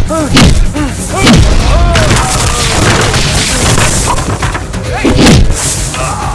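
Film fight sound effects: heavy, booming punch and body-blow impacts with grunts and shouts. The biggest hits fall near the start and about five seconds in.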